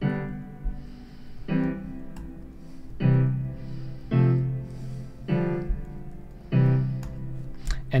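A software piano instrument in the WavTool DAW playing a string of three-note chords (triads) entered from the computer keyboard. Each chord starts cleanly and fades, with a new one about every second and a half, about seven in all.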